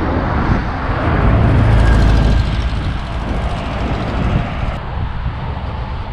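Road traffic noise: a steady rumble of passing vehicles, swelling as one goes by about one to two and a half seconds in, then easing off.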